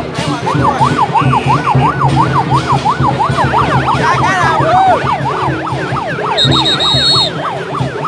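A yelp siren wailing rapidly up and down, about four times a second, with a second siren overlapping it for a while in the middle. A short high steady tone sounds near the end, over a steady low hum and crowd noise.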